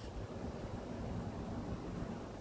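Wind rumbling steadily on a phone microphone outdoors: a low, even rumble with no distinct events.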